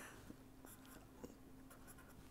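Near silence with faint scratching strokes of a pen writing on paper, over a faint steady hum.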